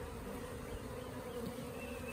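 Honey bees buzzing steadily in a nuc box at its round entrance hole, the hum of a well-populated colony.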